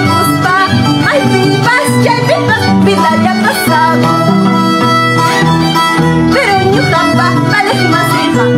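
Huayno instrumental passage: a violin plays the wavering melody over an Andean harp's bass notes and chords.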